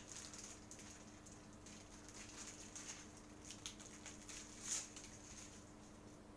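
Faint rustling and small clicks of a plastic mochi package being handled, over a steady low hum. One rustle about three-quarters of the way through is a little louder.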